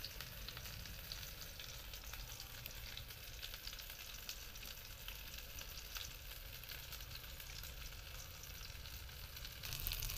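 Faint, steady crackling and sizzling from cooking on a wood-fired clay stove, with a low rumble; it gets louder near the end.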